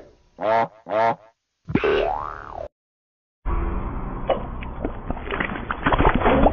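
Cartoon logo sound effects: two short bouncy boing-like tones, then a longer one that rises and falls in pitch. After a brief gap, a duller, cluttered run of cartoon sound effects begins from another logo's soundtrack.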